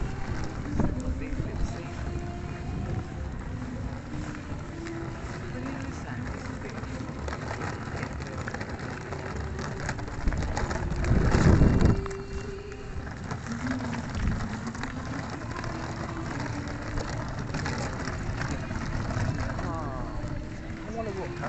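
Outdoor ambience picked up by a handheld camera: a low rumble of wind and handling on the microphone, with faint distant voices. A louder gust or bump of handling noise comes about eleven seconds in.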